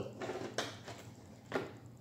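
Two short clacks about a second apart as a plastic gallon jug is handled and moved around.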